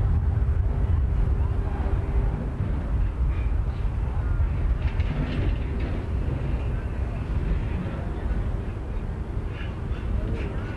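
Wind rumbling heavily on the microphone over a crowd of cyclists, with faint scattered voices and calls from the riders.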